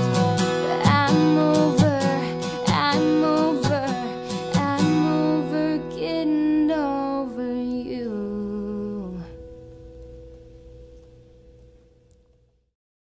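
A woman singing over a strummed McPherson acoustic guitar. The strumming thins out about five seconds in, she holds a last sung line to about nine seconds, and the final guitar chord rings on and fades away near the end.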